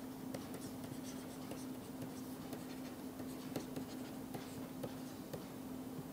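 A stylus writing on a pen tablet's screen: faint, irregular scratches and light taps as handwriting strokes are drawn, over a steady low electrical hum.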